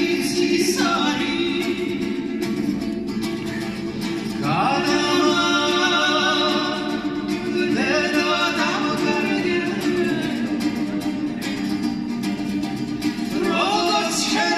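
A Georgian folk song sung live: a choir holds a steady low drone under a lead voice's melody, which enters in long phrases with a plucked panduri beneath.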